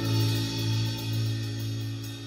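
A live band's final chord ringing out and slowly fading: a low bass note and guitar sustain, with faint cymbal shimmer above.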